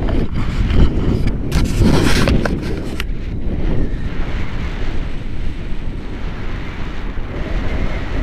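Wind rushing over an action camera's microphone in paragliding flight, a loud low rumble, with several sharp crackles in the first three seconds before it settles into a steadier rush.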